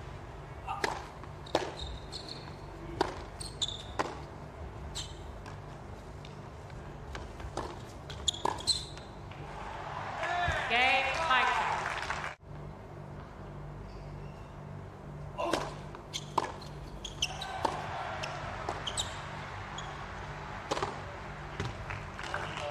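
Tennis rallies on a hard court: a tennis ball repeatedly struck by racquets and bouncing, each hit a sharp pop, in two runs of shots with voices in between.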